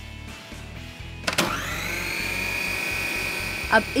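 Food processor motor switched on with an empty bowl, its bowl cover locked so the safety interlock lets it run. About a second in, its whine rises quickly, then it runs steadily at a high pitch.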